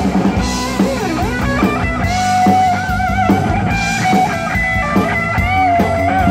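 Live rock band playing an instrumental passage: an electric lead guitar plays a melody with slides and wide vibrato on held notes, over bass guitar and a drum kit keeping a steady beat.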